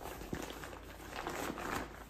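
Soft rustling and faint knocks of a fabric insulated lunch tote being gripped by its handles and turned around by hand.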